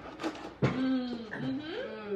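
A person's voice making a drawn-out, wavering sound without clear words, after a sharp knock just over half a second in.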